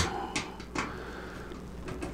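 Screwdriver turning a side-panel thumbscrew on the back of a PC case: two short scraping clicks in the first second, then a faint low hum. The screw was done up tight so the panel would not come off in shipping.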